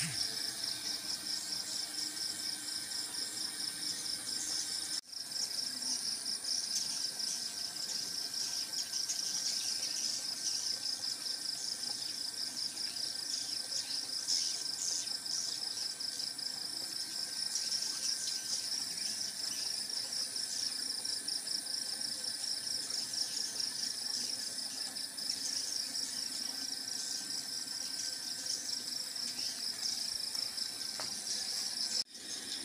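A large flock of edible-nest swiftlets twittering around a swiftlet house: a dense, high, fast-pulsing chatter that goes on without a break. The sound cuts out for a split second about five seconds in.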